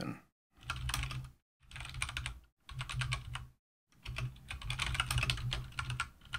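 Typing on a computer keyboard in four short bursts of rapid key clicks, with brief dead silences between them.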